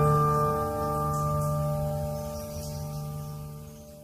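Instrumental music ending: the last chord of an acoustic guitar piece rings on and fades steadily away, dying out just at the end.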